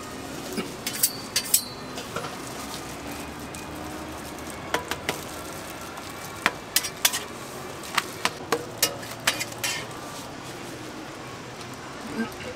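A metal spatula clicking and scraping against a hot crepe griddle, making scattered sharp clinks in small clusters, over a steady low sizzle.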